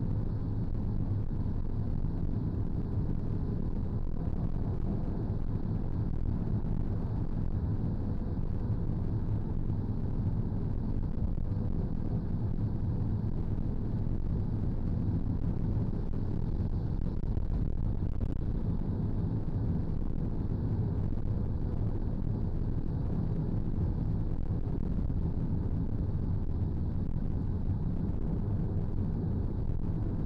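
Steady low rumble of road and engine noise heard inside the cabin of a passenger van driving along a highway.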